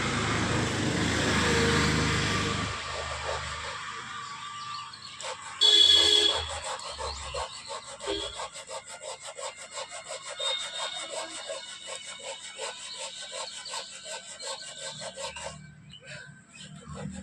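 Hand sanding of a carved wooden panel: abrasive rubbing on wood, first as a continuous rub, then as quick short strokes, several a second. A brief, loud pitched sound cuts in about six seconds in.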